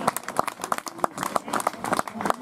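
A few spectators clapping by hand: quick, uneven, sharp claps, several a second, close to the microphone.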